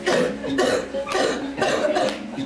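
Voices in four loud, harsh bursts about half a second apart, like coughs or shouted syllables.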